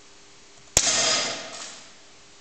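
A single sharp metallic clang, loud and sudden, that rings and dies away over about a second.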